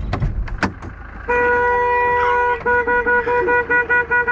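A few clicks, then a car horn: one long blast from about a second in, breaking into a rapid string of short toots, about four a second.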